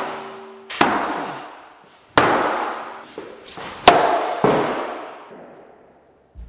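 A long metal pipe struck several times against a boxed TIG welder: heavy blows spaced about a second apart, each ringing out and fading slowly.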